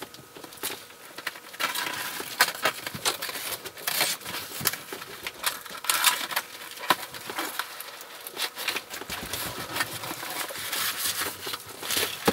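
A large cardboard shipping box being handled and unpacked: packaging crinkling and rustling, with scattered sharp clicks and light knocks of cardboard.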